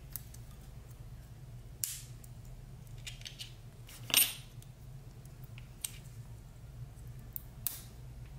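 Utility-knife blade cutting and scraping at the plastic casing of a laptop CMOS coin-cell battery pack: a few short, sharp clicks and scrapes, the loudest about four seconds in.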